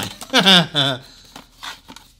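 A man laughs briefly. This is followed by a few faint rustles of a small cardboard box being handled.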